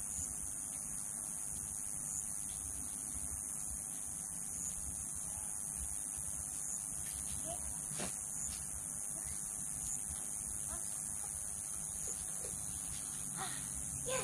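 Faint scraping of hard garden rakes levelling loose, freshly tilled soil, under a steady high-pitched hiss. A single sharp knock comes about eight seconds in.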